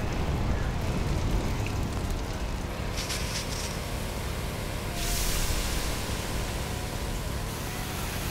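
Steady low outdoor rumble on a wildfire line, with the hiss of fire-hose water spray growing stronger about five seconds in and easing a couple of seconds later.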